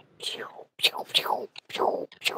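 A person whispering or speaking in a breathy, unvoiced way, in several short bursts.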